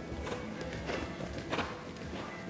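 Background music with a cantering horse's hoofbeats on arena sand: three thuds about two-thirds of a second apart, the loudest about one and a half seconds in.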